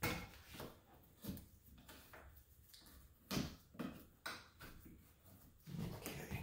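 Faint, irregular light clicks and taps, about seven, from small parts being handled and picked off the metal pins of a wooden piano key frame.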